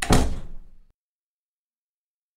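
Door-closing sound effect: a single door shutting with a sudden thud that dies away in under a second.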